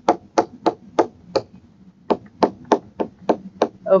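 Stylus tip tapping on a tablet's glass screen with each pen stroke of handwriting: a quick, uneven run of sharp taps, about four a second, with a short pause about a second and a half in.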